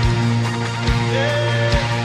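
Live worship band playing an instrumental passage: acoustic and electric guitars over a held chord with a strong bass note, and a low drum beat about once a second.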